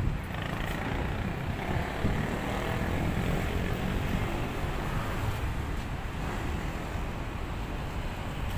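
Steady city traffic noise: a low, even rumble of vehicles on a nearby road, with no single event standing out.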